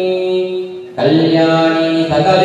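A man's voice chanting Sanskrit wedding verses in long held notes, pausing for breath just before a new sustained note begins about a second in.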